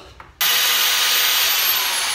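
Handheld power drill spinning freely at high speed, starting abruptly about half a second in, with a whine that slowly falls in pitch.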